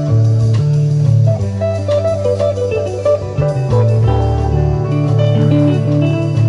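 Live rock band playing without vocals: a clean electric guitar melody over a moving bass line, drum kit and keyboard.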